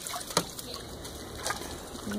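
Water sloshing in a plastic kiddie pool as a dog wades in it, with a few short splashes and knocks, the sharpest about half a second in.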